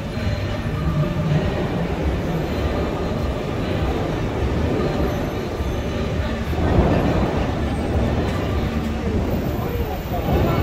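Busy street ambience: a steady low rumble of traffic with the voices of passers-by. A louder rushing swell comes about seven seconds in.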